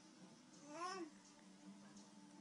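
A baby's single short coo, rising and then falling in pitch, about a second in, over a faint steady hum.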